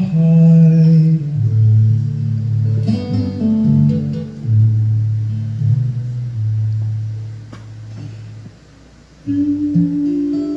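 Live solo acoustic guitar with a singing voice, the guitar holding long low notes. The music thins out and briefly drops away a second or so before the end, then comes back in.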